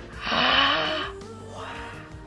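Soft background music with a short, breathy vocal sound from a person lasting under a second, starting about a quarter of a second in.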